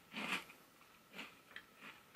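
A person chewing a puffed corn snack with the mouth closed: a few faint, soft crunches, the first the loudest, from a puff that is airy with only a slight crunch.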